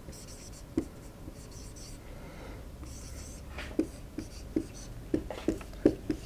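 Dry-erase marker writing on a whiteboard: a few drawn-out squeaky strokes in the first half, then a quick run of short, sharp strokes and taps of the tip against the board in the second half.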